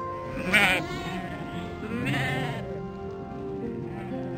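Sheep bleating twice, about half a second and two seconds in, over steady background music.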